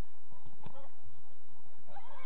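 Distant shouts of players on a football pitch, with a single sharp knock about two-thirds of a second in.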